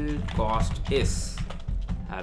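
Computer keyboard typing, under a voice that is heard at the same time.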